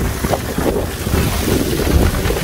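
Strong wind buffeting a phone microphone in a rainstorm: an uneven low rumble of gusts under a steady rushing hiss.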